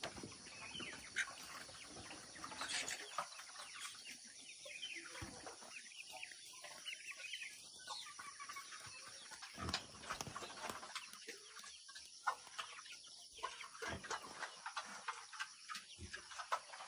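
Chickens clucking faintly, amid scattered small clicks and taps.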